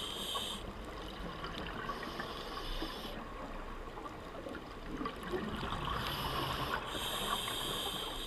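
Open-circuit scuba regulator breathing heard underwater: hissing inhalations lasting about a second, alternating with stretches of bubbling exhaust. A breath is drawn about two seconds in and another about six seconds in.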